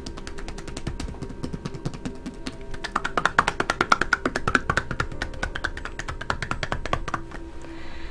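Hands striking a bare, oiled back in rapid percussive massage strokes (tapotement), a fast patter of slaps, several a second, louder in the middle.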